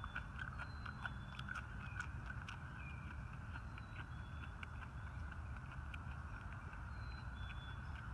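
A person chewing a mouthful of raw wild leek (ramp), with a scatter of small crisp clicks from the crunching. The chewing is faint against a low steady rumble.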